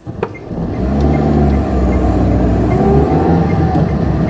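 Car engine sound effect: a click, then an engine building up over the first second and running steadily, its pitch rising and falling a little.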